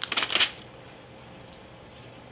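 Thin Bible pages riffled and turned by hand: a quick papery rustle lasting about half a second, then quiet room tone with one faint tick.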